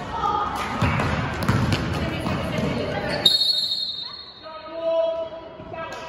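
Basketball game noise in a gym, with spectators shouting and the ball bouncing during play, then a sharp, high referee's whistle blown about three seconds in, stopping play for a foul. A raised voice follows near the end.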